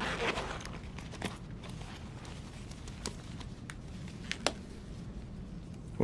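Quiet handling sounds in a small room: a brief rustle at the start, then scattered small clicks and ticks over a faint low hum.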